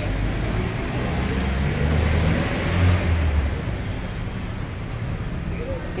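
LRT Line 1 fourth-generation light rail train pulling out of the elevated station on the viaduct overhead: a low rumble and hum that swells about two to three seconds in and eases off toward the end, over street noise.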